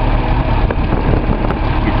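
Datsun L28 fuel-injected straight-six idling steadily with its oil filler cap off, running lean on the unmetered air drawn in through the crankcase ventilation.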